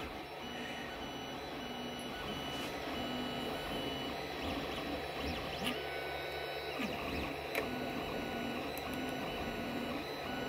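FDM 3D printer running a print: its stepper motors whine in short stretches that change pitch as the print head moves, over a steady fan hiss, with a few faint clicks.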